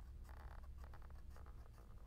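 Felt-tip permanent marker scratching on chart paper in a run of short strokes, drawing a dashed line along a set square's edge. Faint, over a low background hum.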